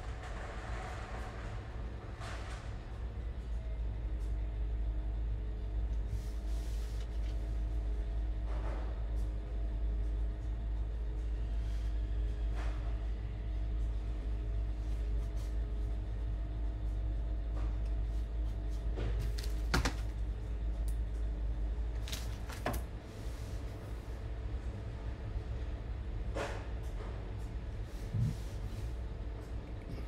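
Steady low rumble of street traffic, with a few sharp clicks scattered through it.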